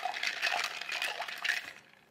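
Ice cubes clinking against the inside of a metal shaker tin as a bar spoon stirs a cocktail: a quick, irregular run of light clinks that dies away shortly before the end.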